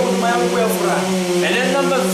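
A person speaking over a steady hum.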